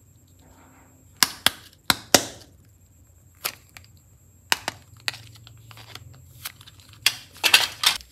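A clear-and-pink plastic ball capsule being handled and pulled apart: a series of sharp plastic clicks and snaps. Four come in quick succession between one and two and a half seconds in, a few more come in the middle, and a dense cluster comes near the end.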